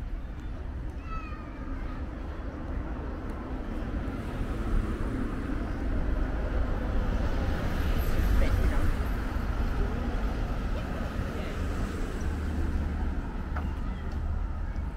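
Street ambience on a waterfront road: a van drives past, its engine and tyre noise swelling to loudest about two thirds of the way through and then fading. Passers-by's voices murmur throughout, and a short high gliding call sounds about a second in.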